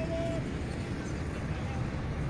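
Outdoor background of a steady low rumble with faint distant voices; a voice calls out briefly at the start.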